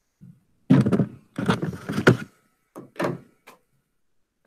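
Close thumps, knocks and rubbing from a camera being handled, turned and set in place, in three bunches about a second apart.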